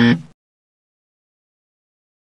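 Tail of a loud, steady buzzer sound effect, an edited-in 'wrong' buzzer marking a broken rule, cutting off abruptly a fraction of a second in; the rest is dead silence.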